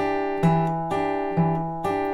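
Steel-string acoustic guitar fingerpicked in a steady pattern: the thumb plucks a bass note at the seventh fret of the A string, alternating with a two-note doublestop picked by the index and middle fingers on the G and B strings at the seventh and eighth frets. A new note comes about every half second, each left to ring.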